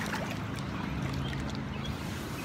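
Rubber wader boots splashing and sloshing through shallow river water as a few steps are taken.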